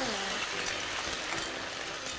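Clams and mussels sizzling in a pan with white wine just poured in over the hot oil: a steady sizzle as the alcohol cooks off.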